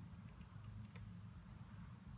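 Near silence: steady low room hum, with a faint tick about a second in.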